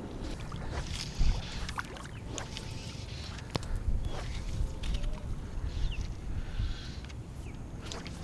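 Shallow salt water sloshing and lapping around a wader's legs, over a steady low wind rumble on the action camera's microphone, with scattered light clicks and small splashes.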